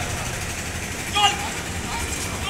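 Busy street ambience: a steady hum of traffic and crowd noise, with a short distant voice call about a second in.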